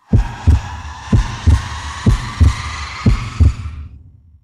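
Isolated drum track: kick drum hitting in pairs, a double thump about once a second, under a high shimmering cymbal-like wash. It starts out of silence and trails off just before the end.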